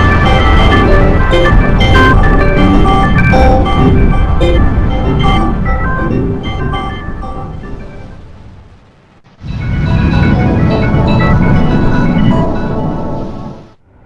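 Two Windows system chimes played through a heavily processed, distorting audio effect: first a loud run of bright electronic notes over a heavy low rumble that fades away about eight seconds in, then, after a short gap, a second shorter chime of held organ-like tones that cuts off just before the end.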